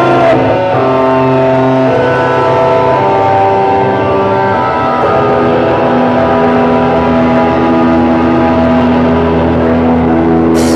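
Live band playing a loud drone of long, distorted held notes that shift in pitch every second or two, with no drums.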